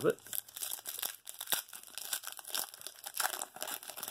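Foil trading-card pack crinkling and tearing as it is pulled open by hand, a run of irregular sharp crackles.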